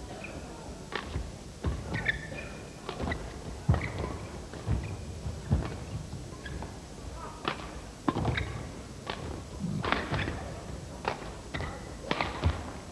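Badminton rally: racket strikes on the shuttlecock and players' footfalls on the court, short sharp knocks coming about once a second, some in quick pairs.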